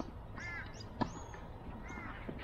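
A bird calling, once about half a second in and again near the end, with a single sharp knock about a second in.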